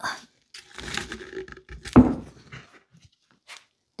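Effortful breathing and handling noise from a person setting a heavy cylindrical weight down on a stack of glass plates, with one louder dull knock about two seconds in.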